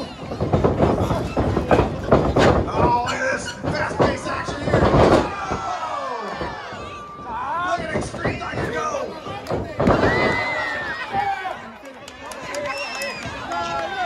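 Wrestling ring impacts, sharp thuds and slaps of bodies and blows on the ring, repeated over the first half, under a crowd's shouting and yelling that runs on throughout.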